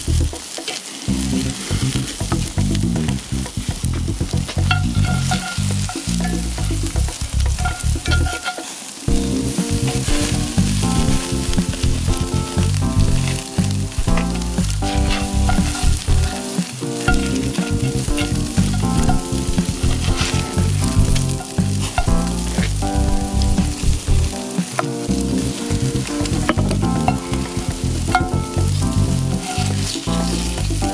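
Lobster tails and melted garlic butter sizzling on a hot charcoal grill and in a cast-iron pan, under background music with a steady beat whose bass line drops out briefly about every eight seconds.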